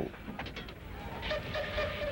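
A distant steam whistle holds one steady note from a little over a second in, over a steady rumbling work-site background.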